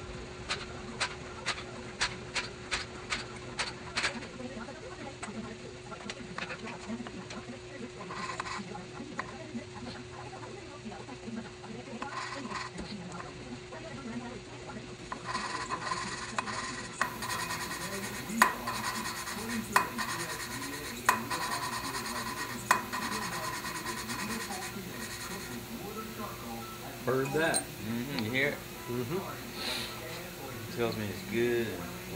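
A valve being hand-lapped into its seat in a 16-valve aluminium cylinder head: lapping compound grinds between the valve face and the seat as the lapping stick is spun back and forth, giving a gritty rasping rub in bursts. A run of regular clicks comes in the first few seconds. The lapping marks where the seat meets the valve face.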